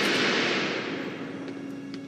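A rushing hiss of air as the cold room's heavy metal door is opened, fading away steadily, with a faint low hum coming in about halfway through.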